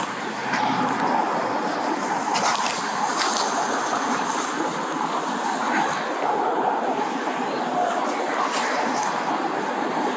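Clothing rubbing against a body-worn camera's microphone as it presses on a man's shirt during a pat-down: a steady, muffled scraping rustle.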